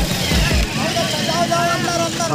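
A person's voice talking among a crowd, with a few heavy bass beats of background music in the first half-second.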